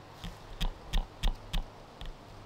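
Footsteps on a lawn with dry grass and fallen leaves, about three quick steps a second.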